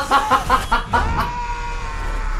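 A man laughing hard in quick bursts, then about a second in a single long, held yell.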